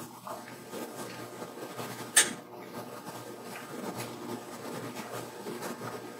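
Quiet room tone in a small lecture room, broken once about two seconds in by a single short, sharp click.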